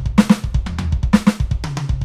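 Electronic drum kit played in a linear groove, stick hits alternating with bass drum kicks in a hand-hand-foot-foot figure that repeats about once a second.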